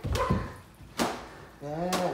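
Thuds and a sharp smack from children play-fighting by swinging scarves, the heaviest thud at the start and the smack about a second in, then a child's short call near the end.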